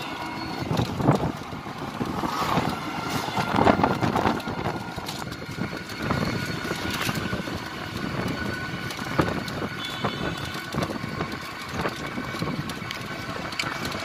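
Open rickshaw moving along a road: steady ride noise with frequent rattles and knocks from the vehicle's frame.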